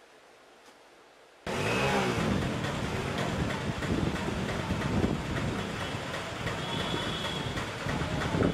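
A faint steady hiss, then from about a second and a half in, the noise of a busy street with motor vehicles passing.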